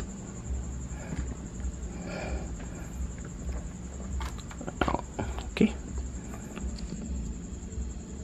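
Handling noise and several sharp clicks as 3.5 mm audio plugs are pushed into a laptop's headphone and mic jacks, most of them a little after the middle. Under them runs a steady low hum with a faint high whine.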